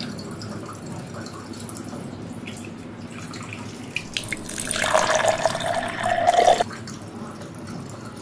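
A bathroom tap running steadily into a washbasin while water is cupped to the mouth and nose for rinsing. From about four seconds in, a louder rushing sound with a steady tone in it rises and cuts off suddenly a little after six and a half seconds.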